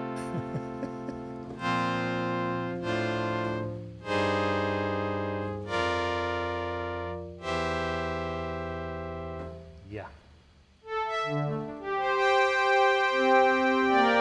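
Yamaha DX7 synthesizer playing a factory strings patch: sustained chords that change every second or so and slowly fade. After a short break around ten seconds, a brighter passage follows, with notes entering one after another.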